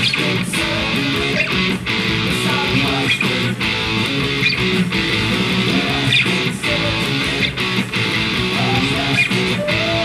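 Electric guitar strumming the chorus chord sequence D-flat, B, A in a steady rhythm.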